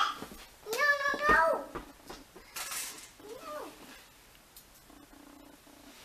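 Young children's wordless, high-pitched vocalising: a short call at the start, a longer held one about a second in, and a shorter one a little past three seconds.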